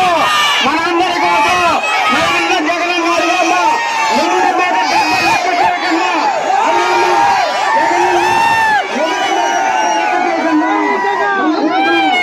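A large crowd shouting and cheering, many voices overlapping loudly and without pause.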